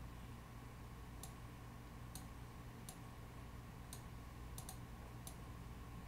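Computer mouse button clicks: about seven faint, sharp clicks at irregular intervals, a pair close together near the middle, over a steady low hum.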